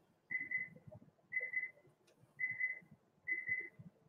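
Faint electronic beeping: four short high tones about a second apart, each made of two quick pulses.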